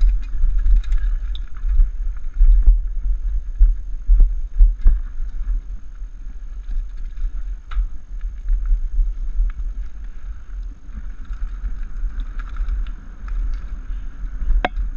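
Mountain bike descending a gravel forest trail, heard from a helmet camera: heavy wind buffeting on the microphone, tyres rolling over loose stones, and a few sharp knocks from the bike over bumps.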